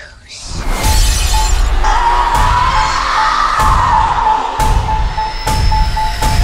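Horror trailer score and sound design: loud, dense music with about five heavy hits roughly a second apart, and a steady high tone held over it from about two seconds in.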